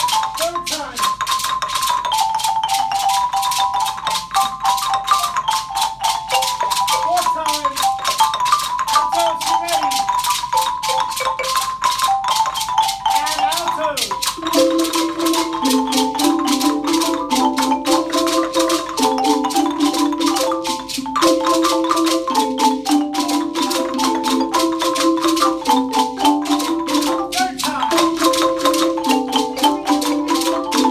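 A children's ensemble of wooden-bar xylophones and marimbas plays a fast repeating mallet pattern together. About halfway through, lower marimba parts come in under the higher line.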